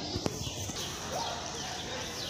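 A short laugh and a couple of sharp knocks near the start, then steady outdoor background noise with faint high chirps.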